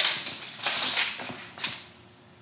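Tape measure being pulled out and handled: its metal blade rattles and clicks in a quick irregular run that fades near the end.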